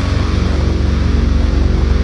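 Metal music: a downtuned eight-string electric guitar holding low, steady sustained notes, with no drum hits.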